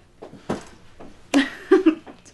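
Light rustling and small knocks of a sports bag being handled while it is packed, then a short vocal sound near the end.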